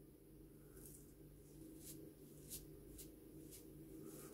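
Faint, short scraping strokes of a RazoRock Gamechanger 0.84 mm safety razor across a lathered cheek, about five of them. They are the sound of the blade catching the last bits of stubble on a nearly clean cheek.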